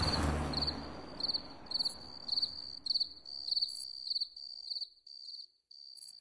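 A cricket chirping in an even rhythm of about two high, pulsed chirps a second, while the tail of a music cue dies away in the first couple of seconds.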